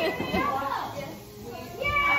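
Indistinct, overlapping voices of children and adults chattering and laughing in a room, with no clear words.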